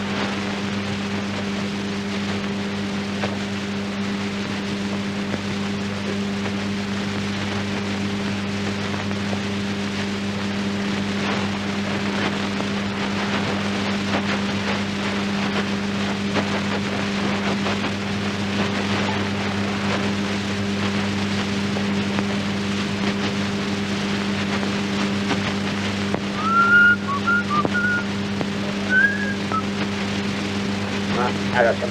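Steady low hum with hiss and crackle from an old optical film soundtrack. Near the end a man whistles a few short notes.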